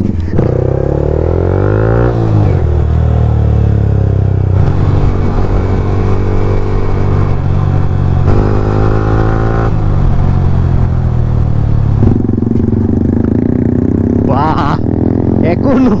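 Yamaha R15M's single-cylinder engine through an aftermarket SC Project exhaust, riding under way, its loud note rising and falling in pitch several times as the revs change.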